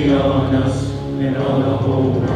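Live worship music: men's voices singing a slow, chant-like melody in long held notes over a low, sustained accompaniment.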